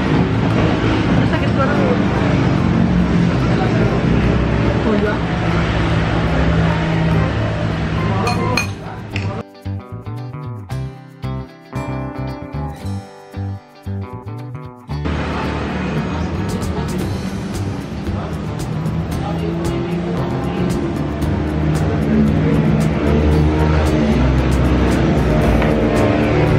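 Background music, likely a song with singing. About nine seconds in it thins to a quieter, sparser instrumental passage for some six seconds, then the full texture returns.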